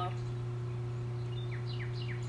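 Steady low hum of background noise, with a few short, falling bird chirps in the second half.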